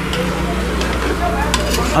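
Chicken pieces and spices sizzling in a pressure cooker pot while a long ladle stirs them: a steady hiss over a faint low hum.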